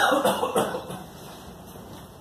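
A single cough right at the start.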